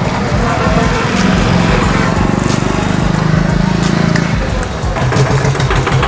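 A small engine running steadily with a low, fast-pulsing hum, louder from about a second in and easing off after about four seconds.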